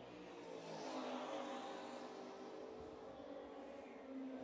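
Race car engines heard faintly from trackside as cars run on the circuit. The sound swells about a second in, then settles to a steadier engine note.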